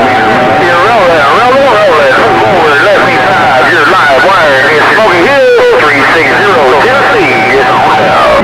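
CB radio receiver loudspeaker carrying distant skip contacts: several operators' voices overlapping and warbling, too garbled to make out, with a steady whistle over them through much of it and a low hum underneath.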